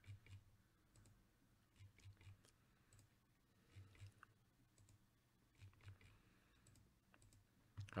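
Faint computer mouse clicks, several in quick pairs, coming every second or so as a web-page button is clicked over and over; otherwise near silence.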